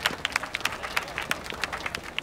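A small crowd applauding by hand, many sharp, irregular claps.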